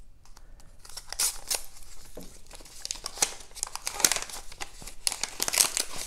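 Thin translucent wrapping of a small card package crinkling and tearing as it is unwrapped by hand, in short irregular crackles and rustles.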